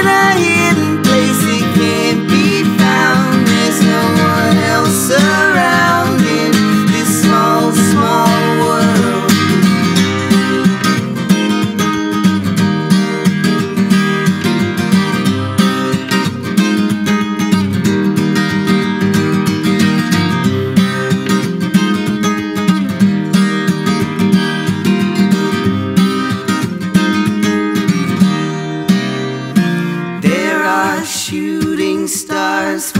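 Steel-string acoustic guitar strummed in a steady, driving rhythm, playing an instrumental break in a live folk-pop song.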